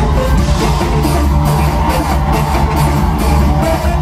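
Live band playing loud instrumental music: a violin line over electric bass, electric guitar and drums, with a strong steady bass.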